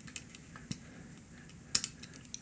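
A few light metallic clicks and ticks from a torque wrench's ratchet head and a hex key bit being handled and fitted together. The loudest is a quick double click near the end.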